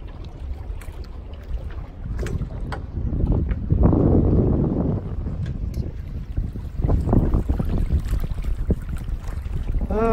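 Wind buffeting the microphone over water washing along the hull of a small sailboat under way, with a louder surge of rushing noise about four seconds in that lasts about a second.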